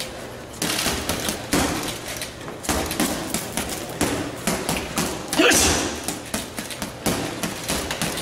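Boxing gloves punching a leather heavy bag in quick combinations: a rapid, uneven series of sharp thuds, several a second.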